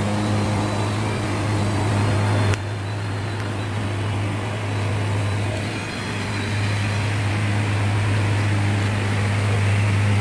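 A steady low mechanical hum under a hiss of noise, with a sharp click about two and a half seconds in, after which it runs slightly quieter.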